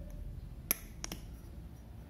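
A sharp click about two-thirds of a second in, then two fainter clicks, as fingers handle a small plastic toner bottle, over a faint steady hum.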